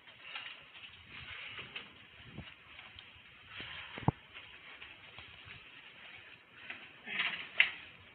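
Faint rustling of police gear and movement close to a body-worn microphone, with one sharp click about halfway through and a short louder burst of rustle near the end.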